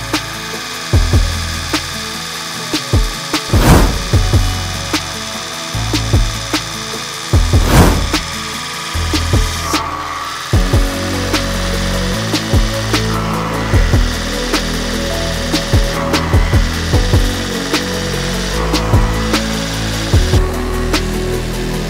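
Electric straw chaff cutter running and chopping straw, with background music over it.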